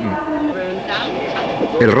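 Steady mechanical background noise, with a man's voice starting near the end.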